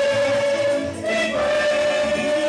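A choir and congregation singing a gospel song together, the voices holding long notes.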